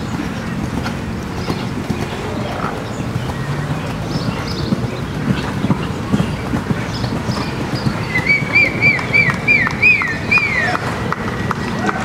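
A horse's hoofbeats at a canter on sand footing. From about eight seconds in, a bird sings a quick run of about eight repeated whistled notes, louder than the hoofbeats.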